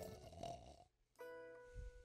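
A sleeping man snores once in the first second, then soft plucked guitar notes play.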